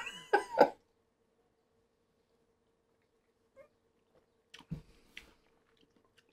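A man's brief laugh, then near quiet while the beer is sipped, broken by a soft knock and a few faint clicks about three-quarters of the way through as glasses are handled and set on the table.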